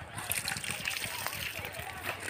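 Irrigation water pouring from a plastic pipe and splashing into a field bed: a steady rush with small crackling splashes.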